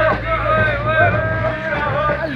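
A motor vehicle's engine droning as it drives off through snow, with wind rumbling on the microphone and people's voices shouting over it.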